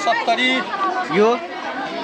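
People talking over each other, conversational speech and chatter.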